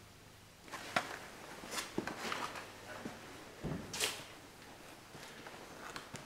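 Irregular knocks, clicks and rustles, the sharpest about a second in and a longer scraping rustle about four seconds in, over a faint steady low hum.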